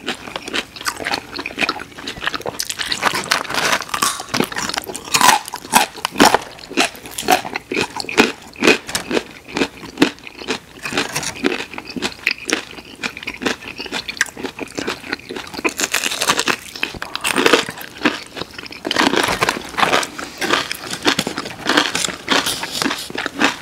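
Close-miked biting, crunching and chewing of food, with irregular crisp crunches throughout. Raw carrot sticks and fried boneless chicken are among what is being eaten.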